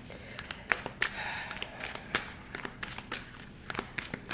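A deck of tarot cards being picked up and handled by hand, giving a scattered run of light taps and clicks.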